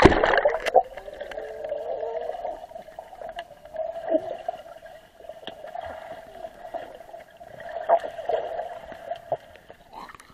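A splash as the camera plunges into a swimming pool, then the muffled sound of the water heard from underwater, a steady dull band with scattered faint clicks and a few swells. Near the end the camera breaks the surface again.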